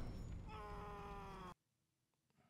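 A man screaming in a drama's soundtrack: one long, held cry that starts about half a second in and is cut off abruptly about a second later.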